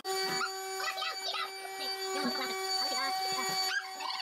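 A steady humming tone, one constant pitch with overtones, with faint voices and laughter over it.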